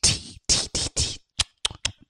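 A man imitating a sound engineer's mic check with his mouth into a microphone: four short hissing "tss" sounds, then a quick run of tongue clicks near the end.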